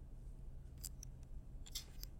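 A few faint, short clicks and taps of a stylus writing on a tablet screen, scattered through the second half over a low hum of room tone.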